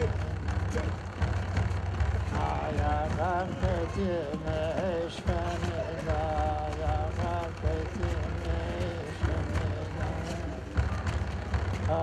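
Innu drum song: a voice chanting with a wavering, sliding pitch over a dense, steady low drumbeat from an Innu hand drum.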